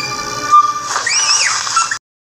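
Cartoon soundtrack: background music with held tones, and about a second in a single high-pitched squeal that rises and falls.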